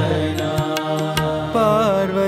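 Devotional bhajan music: drum strokes under held melodic tones, with a new melody line with pitch bends coming in about a second and a half in.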